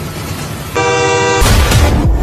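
A sustained, steady horn-like blare lasting about two-thirds of a second, cut off about a second and a half in by a sudden loud hit with heavy bass as the trailer score surges.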